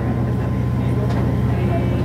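A steady low motor drone with a fast, even pulse beneath it, running without change.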